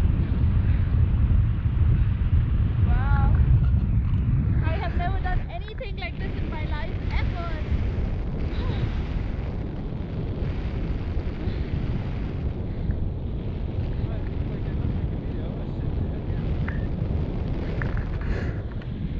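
Airflow buffeting an action camera's microphone in tandem paraglider flight: a steady low rumble that eases a little after about five seconds. A few short faint voice sounds come in the middle.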